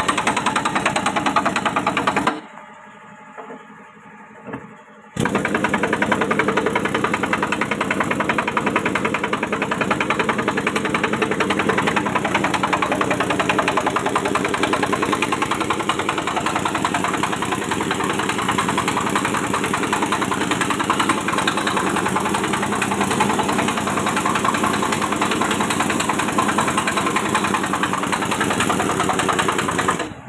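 A steady mechanical running noise, like an engine or motor-driven machine, with a fast even beat. It cuts out abruptly about two seconds in and returns just as suddenly about three seconds later.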